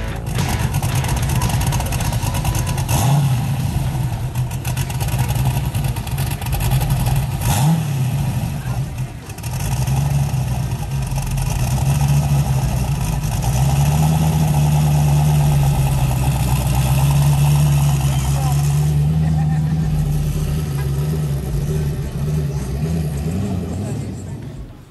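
Car engine running at idle with brief revs, then held at a higher speed for several seconds from about halfway, with voices in the background.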